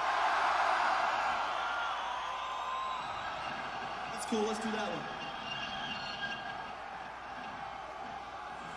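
Arena crowd cheering between songs, loudest at the start and slowly dying down, with a brief shouted voice about four seconds in.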